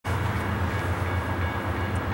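Steady low drone of an approaching freight train's diesel locomotives.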